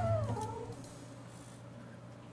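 A cat's meow, added as a cartoon sound effect, falls in pitch and fades out within the first second. After it comes quiet background with a low steady hum.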